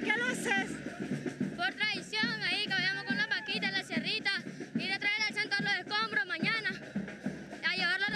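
A filarmónico street band playing, with trumpet and bass drum, under a child's voice speaking close to the microphone.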